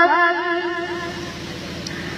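A devotional naat sung through a loudspeaker system trails off over the first second, leaving a steady low hum.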